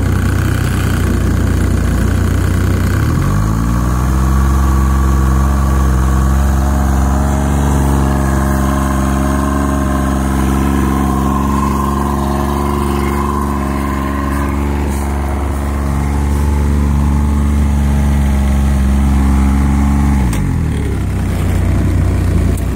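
Outboard motor, cooled by a garden hose, revved up from idle about three seconds in, held at a steady higher speed, then dropped back to idle near the end.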